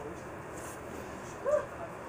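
A single short voice sound, one brief syllable that rises then falls in pitch, about one and a half seconds in, over a steady background hiss.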